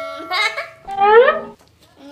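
A child's excited wordless vocalisation, a short sound and then a loud rising squeal-like cry about a second in, while a ringing chime fades out at the start.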